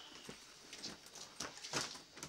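A few soft knocks, footsteps and the rustle of a backpack and clothing as a person takes off a backpack, with the loudest knock near the end.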